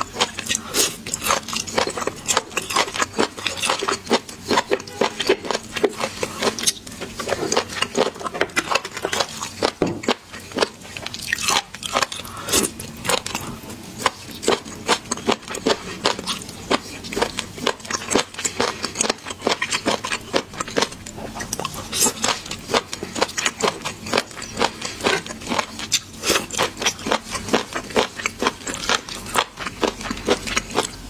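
Close-miked chewing and biting of raw seafood, a dense run of crisp wet clicks and crunches.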